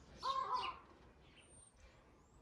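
Birds calling outdoors: one short, harsh two-part call about a quarter of a second in, with thin higher chirps over it, then only faint background.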